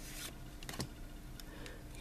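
Pokémon trading cards sliding against one another as a card is moved from the front of a hand-held stack to the back. The sounds are quiet: a brief soft swish at the start and a couple of light ticks just under a second in.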